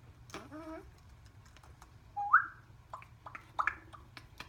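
African grey parrot whistling: one short note about two seconds in that steps up and rises sharply, followed by several sharp clicks.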